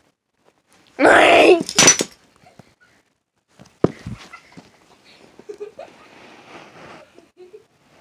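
A loud vocal cry of about a second, starting about a second in, then a single sharp knock near four seconds and faint rustling as the ventriloquist dummy is handled on the carpet.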